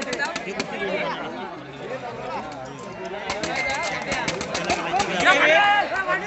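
Crowd of spectators chattering and calling out, many voices overlapping, with a loud shout near the end.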